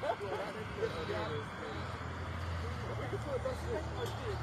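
Indistinct chatter of a small group, several voices talking at once with no one speaker clear, over a steady low hum.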